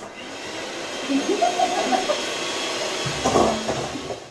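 Electric hand mixer running steadily with its beaters in a steel mixing bowl of flour, a continuous whirring motor that grows louder about a second in.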